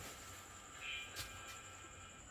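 Quiet room tone with a faint steady high whine and a single soft click a little past one second in.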